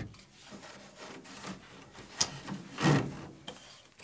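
Hand weaving on an upright wooden carpet loom: yarn and a beater rubbing and knocking against the warp and wooden frame. It comes as a few rough, scraping strokes, the loudest about three seconds in.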